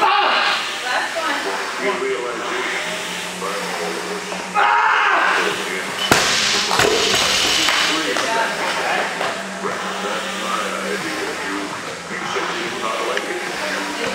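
A loaded barbell dropped onto a rubber gym floor about six seconds in: one sharp impact with a short ringing tail. Voices and music carry on underneath throughout.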